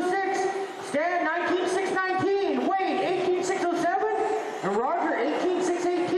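Electric RC buggies' brushless 17.5-turn stock motors whining as they lap the track. It is a steady pitched whine that dips as the cars slow for corners and sweeps up again as they accelerate, about a second in and again near the end.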